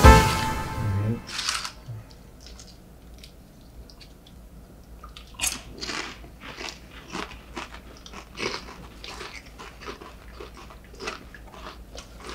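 A brass music sting ends in the first second or so. About five seconds in, tortilla chips start being crunched and chewed, in irregular crunches.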